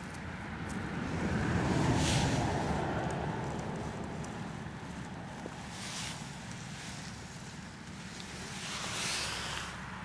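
Wind buffeting the microphone, swelling about two seconds in, with three brief scratchy rustles of fingers digging in loose soil, near the start, in the middle and near the end.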